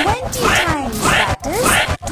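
A voice chanting "bleep" over and over, about two to three syllables a second, each one a quick sweep in pitch.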